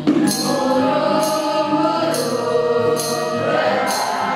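A student choir singing in unison with acoustic guitar accompaniment, the voices coming in at the start. A crisp percussive hit marks the beat about once a second.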